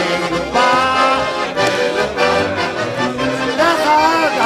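Bell piano accordion playing a tune, with a man's voice singing along.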